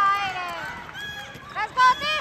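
Raised, high-pitched voices shouting across a gym during a wheelchair basketball game, with short squeaks from wheelchair tyres on the hardwood court near the end.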